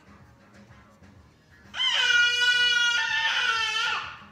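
A small child's long, high-pitched scream, one loud held note starting nearly two seconds in and breaking off just before the end.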